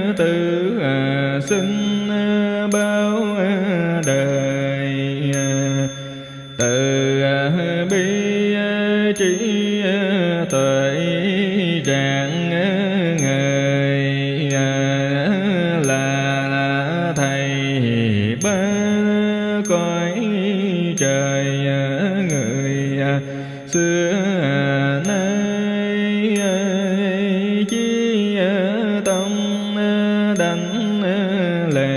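A monk chanting a Vietnamese Buddhist sutra in a slow, drawn-out melody over a musical backing, with a light high tick keeping a steady beat about every three-quarters of a second. The chant breaks off briefly twice.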